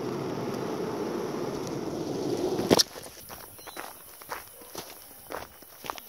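Footsteps of a person walking with small dogs. For about the first three seconds there is a steady rough noise; after a sharp click it drops much quieter, and separate footsteps crunch on a dry dirt track strewn with leaves and twigs.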